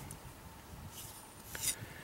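Low background noise with a faint click and a short, soft rustle about one and a half seconds in.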